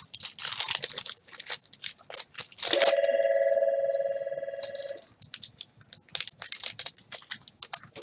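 Crinkling and tearing of a trading-card pack wrapper and plastic card sleeves being handled, in quick dense crackles. About three seconds in, a steady tone with a few pitches sounds for about two seconds, then cuts off.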